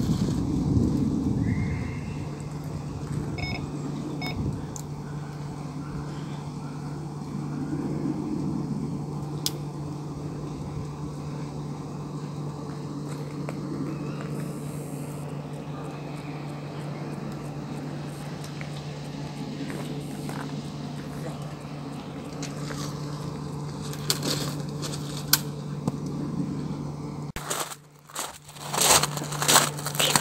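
Steady low hum over faint outdoor background noise. Near the end it gives way to loud, irregular knocks and rustles of close handling.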